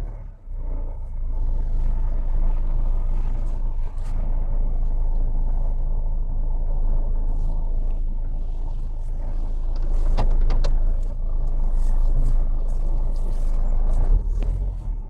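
Car engine running steadily at low revs, heard from inside the cabin while the car is reversed and crept slowly into a parking space. A few light clicks come near the end.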